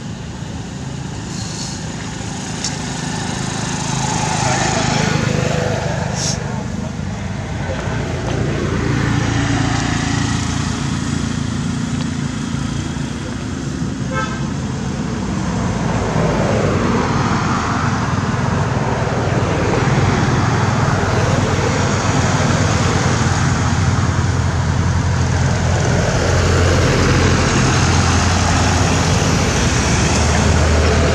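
Steady road traffic noise of motor vehicles, swelling and fading as they pass, over a low engine hum.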